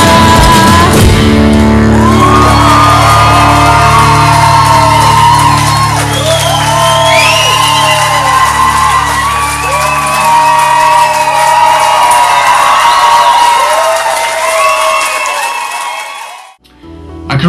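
Live pagan folk band music in a hall. Drum strokes in the first second give way to a held low drone, with voices singing and whooping above it, and the music fades out near the end.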